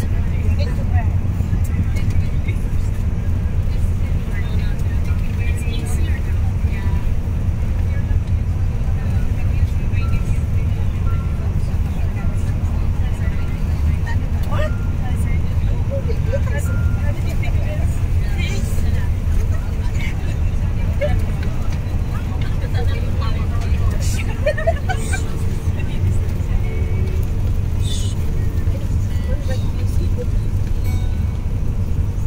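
Steady low rumble of a moving coach bus, engine and road noise heard inside the passenger cabin, with faint scattered voices over it.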